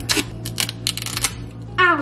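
Duct tape being pulled off the roll: a crackling rip that stops after about a second, followed by a short word.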